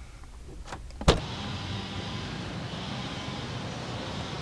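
A car door unlatching with a sharp click about a second in, then a Ford sedan's engine idling steadily.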